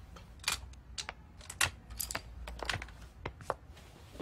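A run of light, sharp clicks and taps at an uneven pace, roughly two a second, over a faint low hum.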